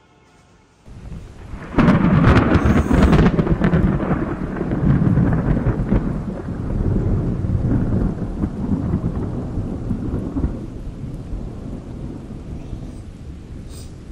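Thunder with rain: a rumble starts about a second in and breaks into a loud crackling clap near two seconds. A long rolling rumble then slowly dies away.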